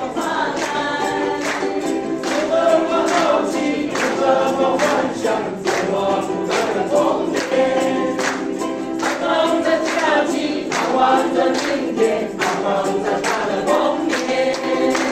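A small group of men and women singing a Chinese song together, accompanied by two strummed ukuleles with a steady, even strum.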